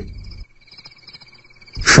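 A night chorus of insects and frogs chirring steadily in the background, a sound-effect bed mixed under the narration, with a thin steady high tone and a faster pulsing chirr above it. A man's narrating voice trails off just after the start and comes back in near the end.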